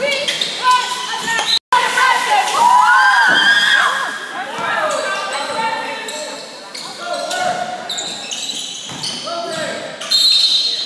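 Basketball being dribbled and bouncing on a hardwood gym floor, with sneakers squeaking on the court and players and spectators calling out, in a large echoing gym.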